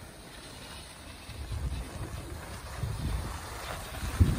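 Wind buffeting the microphone along with the rushing scrape of a snowboard sliding over packed snow on a groomed run, a steady low rumble that grows louder and more uneven from about a second in.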